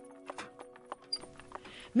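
Horse hooves clip-clopping, a scattered run of sharp clops, over a soft held music chord that fades out partway through.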